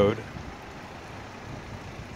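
Steady outdoor background noise, an even hiss and rumble with no distinct event.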